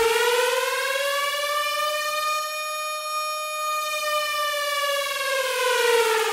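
A siren wail: one long tone that slowly rises in pitch to a peak about halfway through, then slowly falls again.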